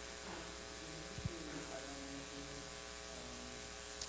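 A faint, distant voice speaking off-microphone, over a steady electrical hum made of many even tones.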